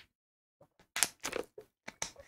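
Thin plastic water bottle crinkling and crackling as it is handled, with a cluster of crackles about a second in and another short one near the end.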